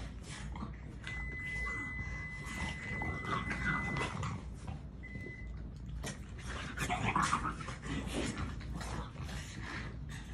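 French bulldogs play-fighting: dog vocal noises over continual scuffling, loudest about seven seconds in. A thin steady high tone sounds for about three seconds from a second in and briefly again about five seconds in.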